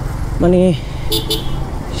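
Motorcycle engine running at low speed, a steady low pulsing rumble, in busy street traffic, with two short high toots from nearby traffic about a second in.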